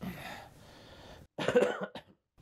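A man's short cough about one and a half seconds in, after a soft breathy noise.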